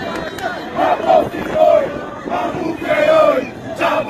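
A crowd of men shouting and chanting, many voices overlapping in loud calls that rise and fall in pitch.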